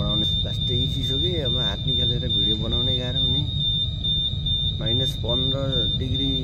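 A voice talking over a steady high-pitched whine and a low rumble.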